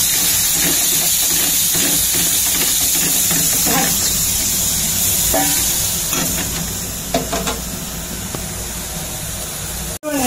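Spice paste frying in oil in an aluminium kadai, a steady sizzle, with a metal spatula stirring and scraping the pan. The sizzle gets a little quieter about six seconds in.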